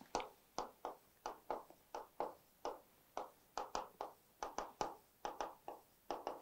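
Marker drawing on a whiteboard: a quick, uneven run of short taps and scratches, about three a second, as small circles and plus and minus signs are drawn.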